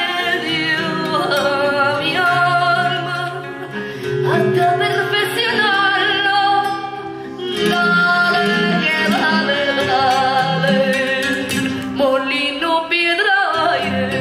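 Flamenco music with a singer holding long, wavering, ornamented sung lines over the accompaniment.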